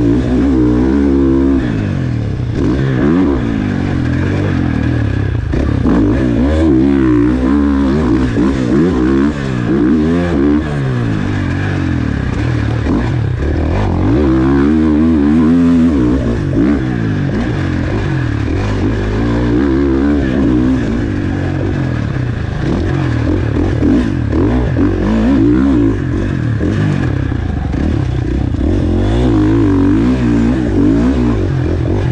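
KTM four-stroke motocross bike ridden hard, heard close up from on the bike. The engine revs rise and fall over and over as the rider opens and closes the throttle and shifts through the track's sections.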